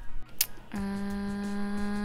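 A short click, then a woman humming one steady held note for over a second.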